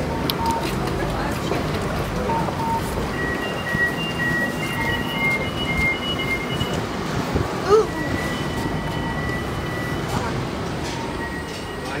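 Steady rumble of a passenger train while boarding, with a steady high whine through the middle and a brief exclamation near the end.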